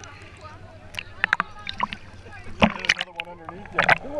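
Water sloshing and splashing with sharp clicks and knocks, heard through a camera held partly under water in shallow sea, and muffled voices of people wading, one of them about three seconds in.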